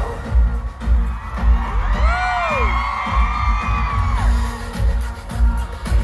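Loud live pop concert music over a stadium sound system, heard from within the crowd: a heavy pulsing bass beat, with high sliding tones that rise and fall about two seconds in.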